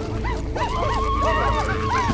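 Several voices hooting and yipping in quick, overlapping, animal-like cries that rise and fall in pitch, over a music score with a held low note.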